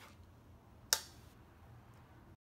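A single sharp click about a second in, which dies away quickly, over faint room tone with a low steady hum.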